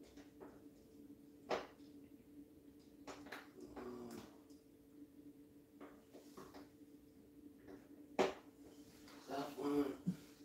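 A few sharp clicks and knocks, the loudest about a second and a half in and about eight seconds in, over a steady low hum, with brief faint voice sounds near the middle and just before the end.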